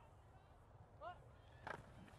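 Near silence: faint open-air background on a sports field, with one brief faint call about a second in.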